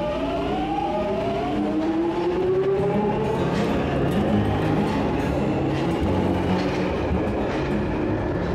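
London Underground tube train pulling out of a platform, its motors giving a rising whine over the first three seconds or so, then a steady running rumble in the tunnel.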